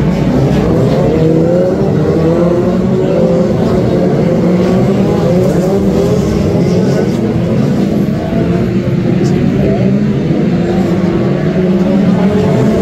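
Several BriSCA F2 stock car engines racing together, their overlapping notes rising and falling in pitch as the cars lap the oval.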